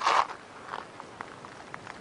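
Footsteps of a person walking on a rocky dirt trail, a string of light, irregular footfalls, opening with a short, louder rush of noise.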